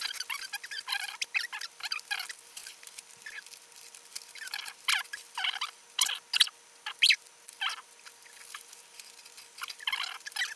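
Sheets of paper being folded and creased by hand into paper airplanes: irregular crinkling and rustling, in quick bursts with the sharpest crackles about five to seven seconds in.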